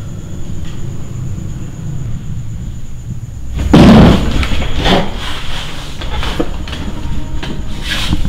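A steady low rumble, then a sudden loud boom about halfway through, followed by a scattering of sharp knocks.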